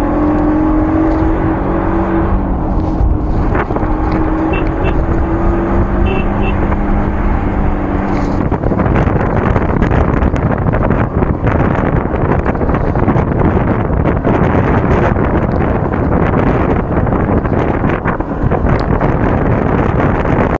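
Wind rushing over the microphone and road noise from a moving motorcycle. For the first eight or so seconds a steady low drone runs underneath. After that the wind noise gets rougher and fuller.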